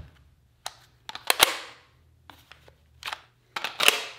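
A few sharp plastic clicks and knocks from handling a Makita 18-volt cordless drill and its slide-on battery. The loudest comes a little over a second in, with a brief ring after it, fitting the battery latching back into place; another loud click comes near the end.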